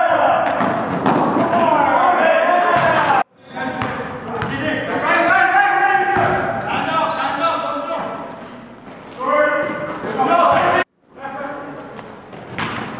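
Live basketball game sound in a gym: a ball bouncing on the court floor amid players' voices, cut off abruptly twice.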